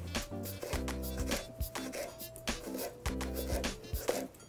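Background music playing, with a kitchen knife slicing cucumber on a plastic cutting board in several irregular taps.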